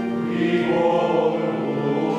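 A group of voices singing Ambrosian chant, with held notes that move slowly in pitch.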